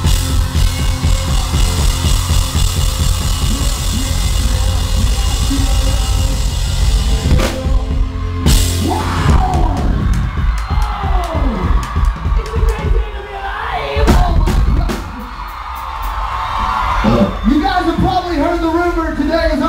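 Live rock band playing loudly, with the drum kit close and prominent. About eight seconds in the steady beat stops and gives way to scattered drum hits, sliding guitar and vocal sounds, and yelling.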